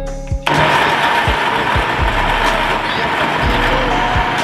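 Countertop blender switched on about half a second in and running steadily with a constant motor whine, chopping and blending chunks of celery and fruit into a green juice. Background music with a steady beat plays underneath.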